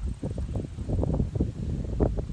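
Wind buffeting the microphone: an uneven, gusty low rumble, with some faint rustling over it.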